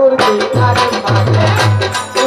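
Live Bengali folk music: hand drums playing a quick, even rhythm with deep bass strokes, over a held instrumental tone.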